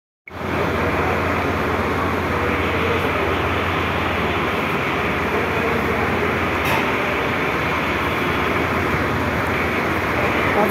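A machine, such as an engine, running steadily with a constant low hum. It cuts in abruptly right at the start and holds an even level throughout.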